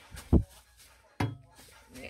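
A low thump, then a sharp click about a second later.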